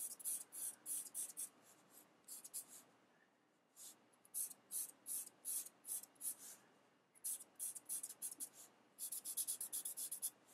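Felt-tip Sharpie marker squeaking across paper in short, quick shading strokes, about three a second, in runs with brief pauses and a faster run near the end.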